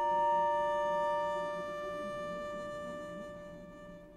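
Quiet contemporary chamber music from a small ensemble of strings, clarinet, vibraphone and prepared piano. Several long held notes overlap and slowly fade away. The highest of them drops out about a second and a half in.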